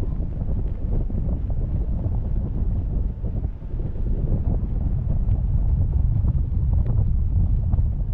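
Wind buffeting the microphone of a camera carried aloft on a parasail tow bar. It is a loud, uneven low rumble throughout.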